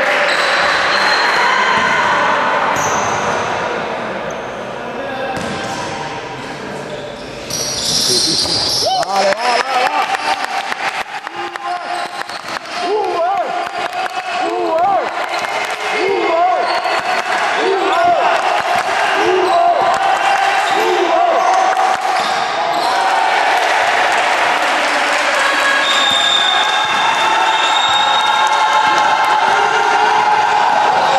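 A basketball bouncing on an indoor court during live play, with many quick knocks from about a quarter of the way in and short squeaks of sneakers on the floor, all echoing in a large sports hall.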